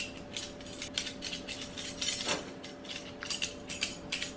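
Irregular light clicks and clinks of a two-piece metal disentanglement puzzle as its interlocked pieces are twisted and knocked against each other by hand, with one firmer knock a little past halfway.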